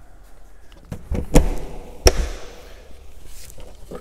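Plastic service-locker hatch on a motorhome's side wall being handled and shut: a short clatter, then two hard plastic knocks less than a second apart as the door closes and latches.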